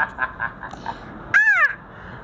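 Hearty laughter, mostly quiet and breathy, then one short, high-pitched squeal of laughter about a second and a half in that rises and falls in pitch.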